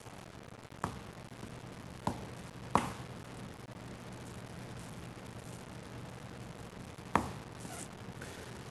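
Four light taps and clicks as fingers pinch the pie dough's edge into flutes against the rim of a metal pie pan, over a steady low room hum.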